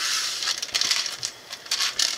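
Clear plastic packaging crinkling while it is handled, with small clicks from plastic pieces.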